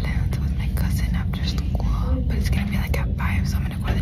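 A young woman whispering close to the microphone over a steady low rumble.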